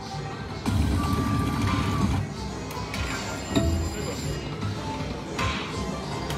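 Lightning Link Tiki Fire video slot machine playing its electronic game music and spin sounds as the reels spin, with a louder stretch about a second in.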